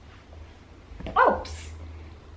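A short, loud vocal cry with falling pitch about a second in, trailing into a breathy burst, like a playful squeal or shout.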